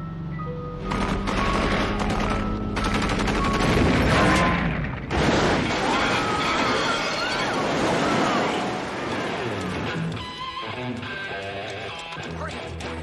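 Film soundtrack: an ice cream truck's chime tune is cut across about a second in by long volleys of rapid automatic gunfire. Then, about five seconds in, there is a loud crash as the truck overturns and burns, with metal scraping and grinding. Music plays under it all.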